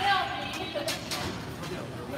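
Background voices in a squash hall, with a couple of sharp knocks about a second in.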